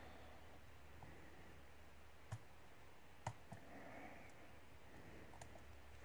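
Steel lock pick working the pins of a challenge lock cylinder under light tension. About five faint, sharp clicks are spread over a quiet background, the loudest about three seconds in, as the pick lifts pins.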